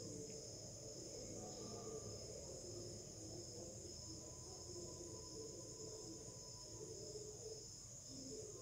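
Faint, steady high-pitched trill of crickets over quiet room tone.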